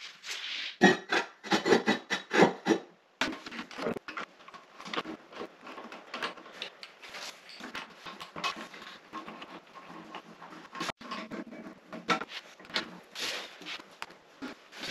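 Knocks and clicks of hands fitting a toilet: a quick run of sharp knocks in the first few seconds, then many small clicks and rattles of plastic seat hardware being set onto the porcelain bowl.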